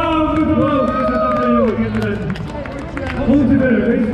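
Drawn-out wordless vocal calls: one held for over a second that then slides down in pitch, followed by shorter voice sounds.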